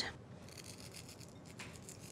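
Faint, scratchy rubbing of fingers sprinkling seasoning (salt and togarashi) over raw vegetables in a bowl, with a few light ticks.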